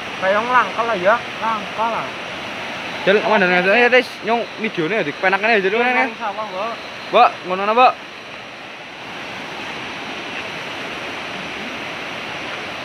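Steady rush of river water running under the bridge, with men's voices talking in short bursts over it; the voices stop about eight seconds in, leaving only the water's rushing.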